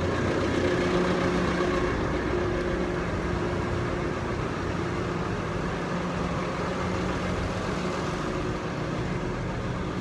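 An engine idling, a steady low drone with an even hum.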